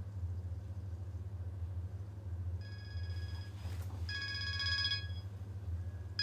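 Mobile phone ringtone signalling an incoming call: short bursts of a bright, warbling multi-tone ring, starting about two and a half seconds in and repeating after a short gap, over a steady low hum.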